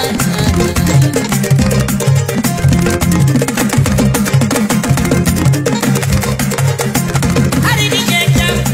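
Gambian dance-band music: a fast, steady drum and percussion rhythm over a repeating bass line, with a brief voice gliding in pitch near the end.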